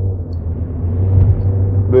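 A steady low rumbling hum, swelling slightly a little past the middle.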